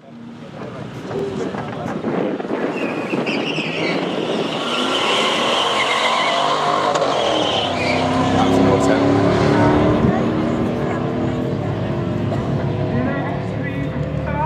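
Two cars launching off the line in a quarter-mile drag race: a Chevrolet Camaro Z28's V8 and a 2006 Seat Leon FR TDi diesel accelerating hard, engine notes rising through the gears. The sound grows louder, peaking about ten seconds in.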